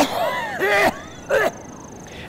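Speech only: a narrator's voice, with a faint high steady tone in the second half.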